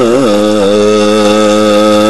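A man's voice chanting Quran recitation in melodic Egyptian style, a brief wavering ornament at the start and then one long note held steady on a single pitch.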